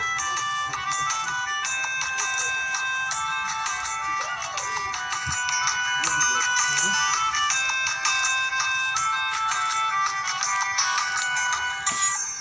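Instrumental break of the song's backing music: a busy run of high, steady electronic notes changing in quick steps, with little bass and no singing.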